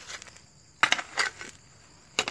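Loose soil and small stones being swept into a small grave hole and landing on the dirt: two short gritty rushes about a second in, a few tenths of a second apart.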